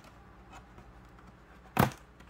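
Quiet handling of a cardboard blister card as a sticker is peeled off it, with one short, sharp, loud knock near the end.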